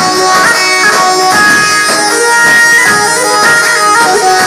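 Instrumental break of Albanian folk dance music played on synthesizer keyboards: a wind-instrument-like lead melody in held notes over a steady beat.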